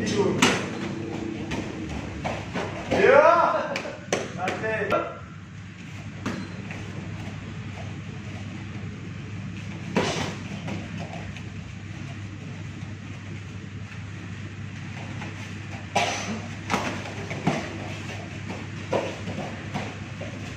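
Sparring with boxing gloves and padded body protectors: sharp slaps and thuds of strikes landing at irregular moments. A voice calls out about three seconds in, over a steady low hum.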